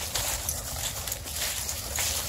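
Dogs' paws scuffling and crunching through dry fallen leaves in a run of short crackling bursts as two dogs play.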